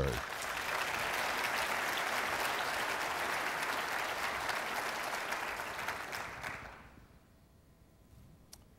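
Audience applauding in a large hall, steady for about six seconds and then dying away near the end.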